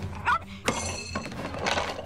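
Cartoon fight sound effects: a short cry, then a sharp thunk with a brief glassy ringing clink about two-thirds of a second in, and a short rushing noise near the end, over steady background music.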